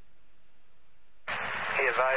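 Police scanner radio audio: a faint steady hiss, then, a little past halfway, a transmission opens abruptly with a rush of static and a voice starts coming through it.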